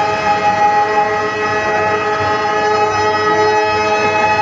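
Harmonium holding one steady chord, several reed notes sounding together without a break.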